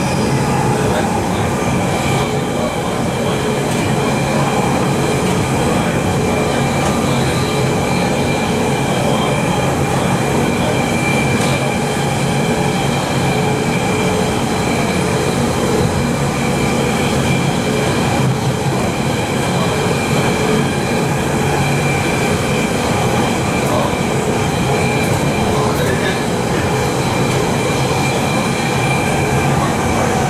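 Interior running noise of a London Underground 1992 Stock train at speed: a steady rumble of wheels on rail with a continuous high whine from the traction equipment.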